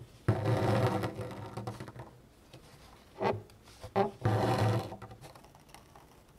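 Metallic gold embroidery thread pulled through fabric stretched tight in a wooden embroidery hoop: two long scratchy pulls about a second each, one starting just after the start and one at about four seconds, with two short sounds between them.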